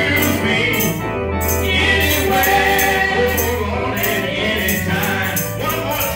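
Gospel song sung into a microphone over instrumental accompaniment, with a stepping bass line and a steady tambourine-like shaking rhythm.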